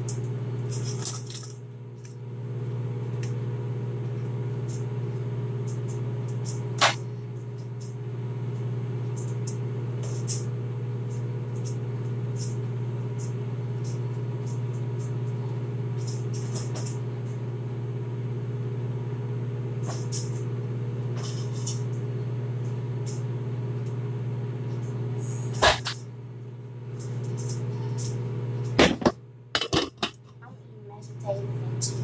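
A steady low hum, as of a kitchen appliance running, with several sharp clicks and knocks from handling things in the kitchen.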